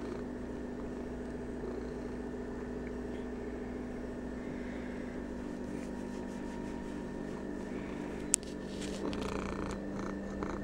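Domestic cat purring while being stroked, over a steady low hum. A single sharp click comes about eight seconds in, followed by brief rustling as the camera brushes against the cat.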